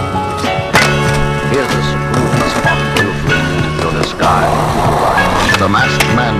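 Music with a steady beat and vocals, over skateboard sounds: a sharp crack about a second in, and a rough grinding scrape for about a second past the middle.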